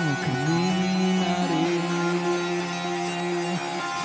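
Live indie rock band playing, the electric guitar holding long sustained notes, with a quick dip in pitch right at the start.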